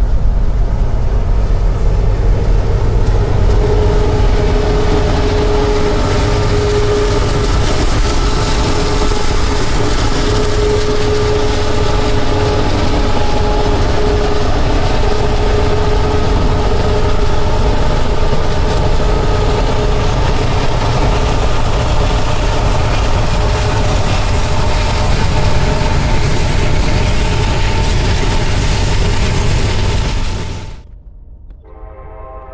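Steady loud rumble of a CSX freight train led by an SD70 diesel locomotive passing close by, with a mid-pitched hum that comes and goes over the first two-thirds.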